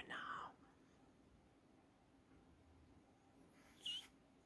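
A whispered word at the start, then near silence with faint room tone; a brief high rustle with a short squeak comes shortly before the end.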